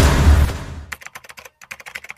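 Computer keyboard typing sound effect: a quick run of key clicks, about ten a second with a brief pause in the middle, after loud music fades out over the first half second.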